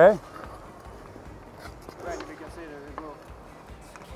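A man says 'okay', then quiet ice-rink ambience with a faint distant voice from about two to three seconds in.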